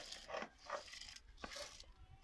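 Fingers sweeping soaked rice off a steel plate into a pot of water, with two short whining calls in the first second.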